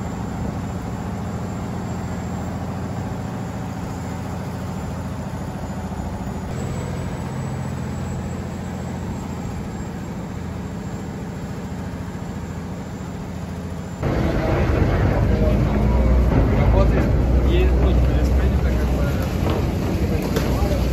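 Canal passenger boat's engine running steadily, heard from inside the canopied cabin. About fourteen seconds in the sound jumps abruptly louder and rougher, a heavy low rumble with noise.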